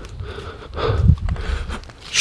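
A man panting hard, out of breath from walking fast while talking; the strongest breaths come about a second in.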